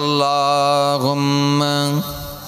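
A man's voice singing a Bengali Islamic gojol, holding one long steady note, briefly breaking about halfway and then holding a second long note.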